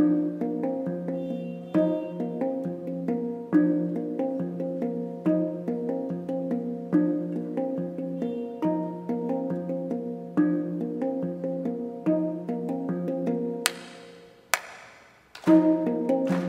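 Handpan played with the hands: a repeating pattern of ringing, overlapping melodic notes over a steady low tone, with a strong accent about every second and three-quarters. Near the end the notes die away, two sharp, bright strikes ring out, and the sound almost drops out before the pattern starts again.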